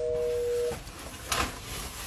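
A steady electronic beep of two tones sounding together, lasting under a second, followed by a short sharp click.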